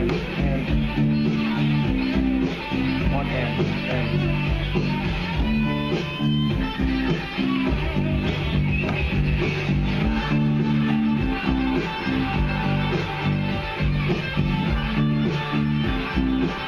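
B.C. Rich four-string electric bass playing a repeating bass line over steady music with a beat.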